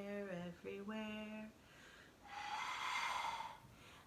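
A woman sings the end of a line of a children's song. About two seconds in comes a breathy blow lasting about a second and a half as she blows through a bubble wand to make bubbles.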